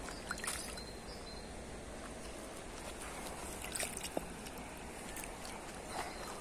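Steady low rush of shallow river water flowing over a stony bed, with a few faint brief splashes at the water's edge.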